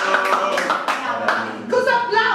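A few people clapping their hands in quick, uneven claps that thin out after about a second and a half.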